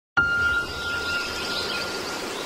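Logo sting sound effect: a chime-like tone struck suddenly just after the start, ringing on at one steady pitch with a hiss beneath it, slowly fading.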